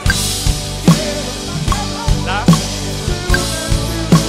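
Live band with a drum kit playing a worship song: strong drum hits land about every 0.8 seconds, with lighter strokes between them, over the sustained sound of the other instruments.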